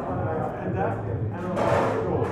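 Biting into and pulling apart a crispy-skinned fried chicken wing, with a short crunchy crackle about one and a half seconds in, over background restaurant chatter.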